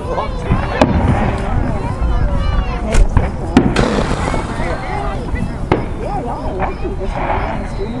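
Aerial fireworks going off at a distance: several sharp bangs, the loudest about three seconds in, over the chatter of a crowd.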